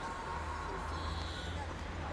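Steady low outdoor background rumble with no ball strikes, and a faint, brief high hiss about a second in.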